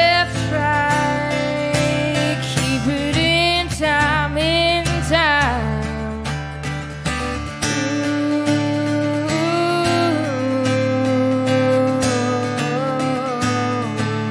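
A woman singing with her own acoustic guitar. Her voice slides and wavers through the first few seconds, then holds longer notes over the guitar.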